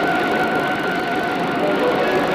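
Cartoon soundtrack of rushing water, a steady hiss and roar, with two long held high tones of background music over it.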